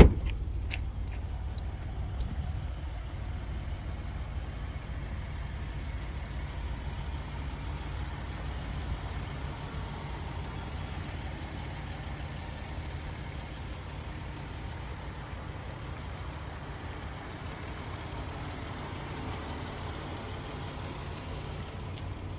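An SUV liftgate shuts with a single thump at the very start, followed by a steady low rumble of the vehicle's engine idling.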